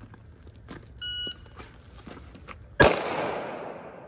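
A shot timer beeps once to start a drill, and about 1.8 seconds later a single rifle shot goes off, its report echoing away through the woods. The gap between beep and shot is the shooter's time, called afterwards as 1.81.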